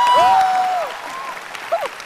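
Studio applause with excited voices, including a couple of long, high shouts in the first second. The clapping tails off toward the end.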